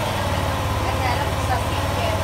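Malaguti Madison scooter engine idling steadily with a low, even hum. The engine is running very hot.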